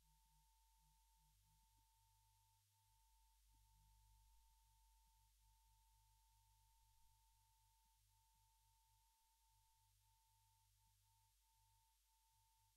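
Near silence: only a faint steady tone with a few brief breaks, over a low hum.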